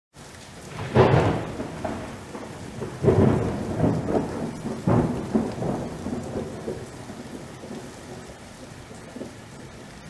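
Thunder over steady rain: three loud crashes about two seconds apart, each rumbling off, then fading out.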